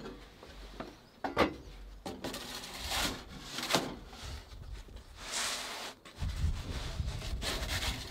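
Pizza peel scraping and knocking against the baking stone of an Ooni 3 pizza oven as the pizza is slid and turned: a few sharp knocks among rasping scrapes. A low rumble sets in from about six seconds in.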